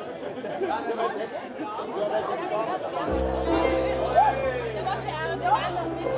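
Talking and chatter on a stage, then a little over three seconds in a keyboard starts a steady held chord that sustains under the voices.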